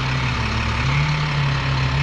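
An engine idling with a steady low drone that wavers slightly in pitch, over an even background hiss.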